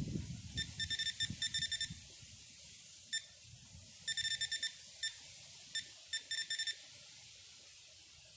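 Electronic fishing bite alarm beeping in quick runs of short high beeps, several times with gaps between, as line moves across it.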